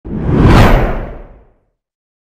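A whoosh sound effect for a logo intro with a deep rumble under it. It swells quickly, peaks about half a second in and fades out by a second and a half.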